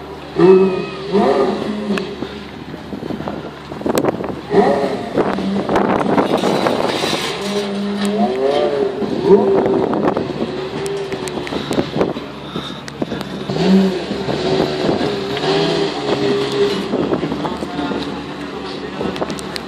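Porsche Carrera GT's V10 engine running and being revved in short blips, its pitch stepping up and holding before dropping back, with people talking nearby.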